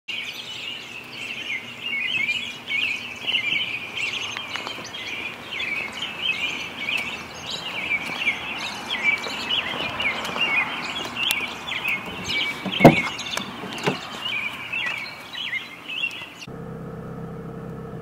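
Dawn chorus of many small birds chirping rapidly and continuously, with one sharp thump about two-thirds of the way through. Near the end the birdsong cuts off abruptly and a steady hum with a few fixed tones takes over.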